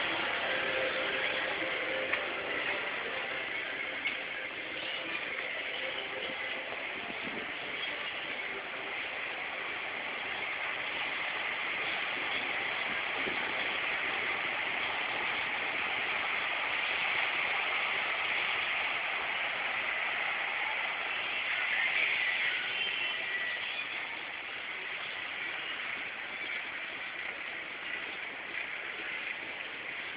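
Steady, hiss-like city street ambience, with a couple of faint clicks in the first few seconds.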